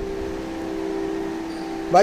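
A steady hum of two close, even tones over a faint hiss, with no change through the whole stretch.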